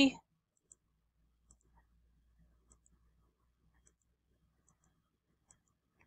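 Faint computer mouse clicks, several of them spaced roughly a second apart, as nodes are placed one by one in embroidery digitizing software.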